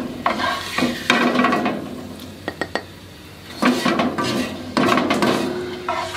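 A spatula stirring and scraping chopped garlic around a non-stick wok in oil, in four strokes of about a second each, with a light sizzle. A few small taps come near the middle.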